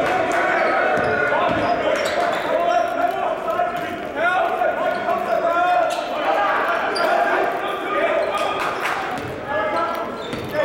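Basketball being dribbled on a hardwood gym floor, the bounces sounding among players' and spectators' shouts that carry in the hall.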